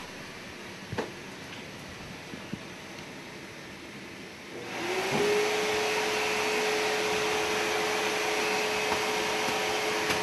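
A vacuum cleaner switched on about halfway through: its motor spins up quickly to one steady pitch with a rush of air. Before that, a faint room with a small click about a second in.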